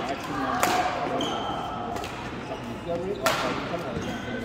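Badminton rackets striking a shuttlecock in a rally: sharp hits, the loudest about half a second in and just past three seconds in, over people talking.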